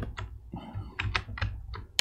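Computer keyboard keys clicking: a quick, irregular run of keystrokes, busiest in the second half.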